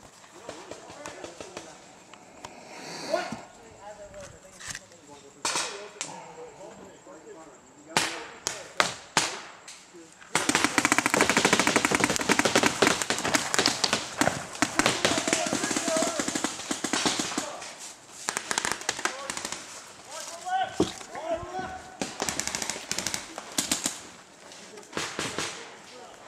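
Paintball markers firing: scattered single shots and short strings, then about ten seconds in a long stretch of rapid, near-continuous fire lasting about eight seconds before it thins out again.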